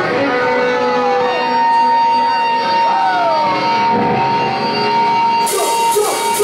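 A live rock band begins a song: held, ringing electric guitar notes with sliding pitch bends and crowd voices over them, then cymbals and drums come in near the end.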